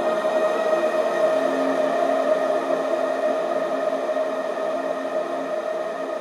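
Ambient synth pad holding one steady chord in a breakdown of a future garage track, with no drums or bass.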